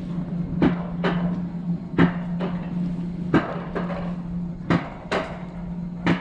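Alpine coaster cart rolling down its metal rail track: a steady low hum from the running wheels, with sharp knocks about six times at uneven intervals as it runs along the track.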